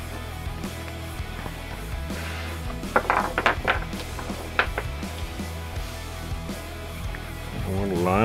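18650 lithium-ion cells clicking as they are pulled out of plastic cell holders and set down on the bench: a quick run of small clinks about three seconds in and one more a second later, over background music.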